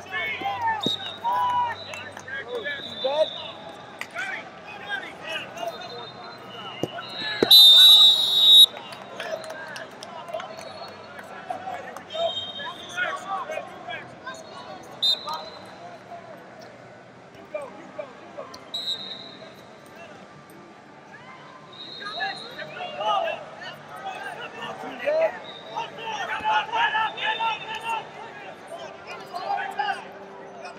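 Referee's whistle blowing one loud, shrill blast about eight seconds in, stopping the wrestling action. Shouting voices of coaches and spectators run throughout, and several shorter, fainter whistle toots come and go.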